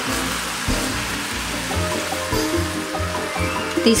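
Sliced mushrooms and garlic sizzling in olive oil in a skillet over high heat, a steady frying hiss, with background music and its stepping bass line underneath.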